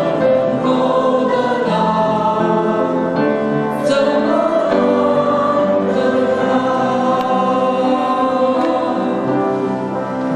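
Mixed choir of men and women singing together, holding long sustained notes.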